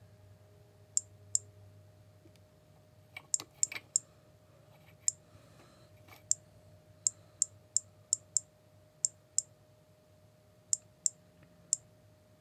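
Radalert 50 Geiger counter clicking at random intervals, each click one detected count from the uranium in a green glass vase. About nineteen sharp clicks in twelve seconds, bunched and irregular, in sped-up playback.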